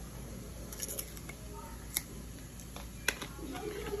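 A brand-new jar being opened by hand: a few sharp clicks and taps spread over the four seconds, over faint room noise.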